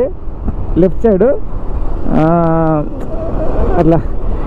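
Motorcycle running along a road with steady low wind rumble on the microphone, under a man's voice talking in short phrases.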